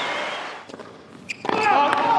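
Crowd noise dying down to a hush, then sharp tennis racket strikes on the ball about a second and a half in, with crowd voices rising straight after.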